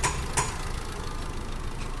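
A Chevrolet Captiva's four-cylinder engine idling with a steady low hum and a few light ticks. It is misfiring on cylinder one, whose ignition coil the engine computer fails to fire.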